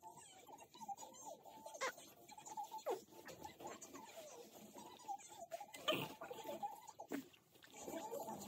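Faint grunts and small squeaks from a young baby during a nappy change, with light clicks and rustles of wipes and nappy handling.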